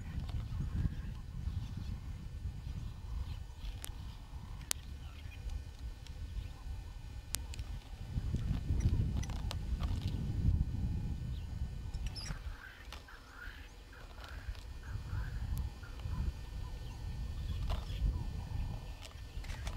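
Two impala rams sparring: a few sharp clacks of their horns knocking together over a low rumble on the microphone, louder midway. Brief wavering calls come about twelve seconds in.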